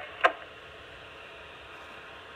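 Two-way police radio between transmissions: a short chirp about a quarter second in, then a faint steady hiss of the open channel.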